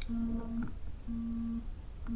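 A man's voice humming two short, level 'mm' sounds between sentences, opened by a single sharp key click.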